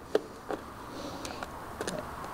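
A few faint clicks and light taps as hands work a scooter's speedometer cable and wiring into the plastic handlebar housing. The sharpest click comes right at the start, with lighter ticks near the end.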